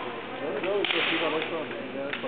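Bamboo shinai swords clacking sharply against each other a few times during a kendo bout, with voices in the hall behind.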